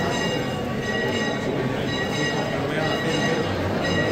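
Church bells ringing continuously, their high tones held steady over the chatter of a crowd.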